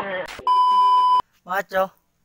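A steady 1 kHz bleep tone, under a second long, that cuts off suddenly, with short bits of a man's speech before and after it.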